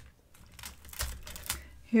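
Loose beaded and metal jewelry clicking and clattering lightly as it is handled and sorted by hand, with a few separate sharp clicks, the loudest about a second in. A strand of stone-chip beads is lifted from the pile near the end.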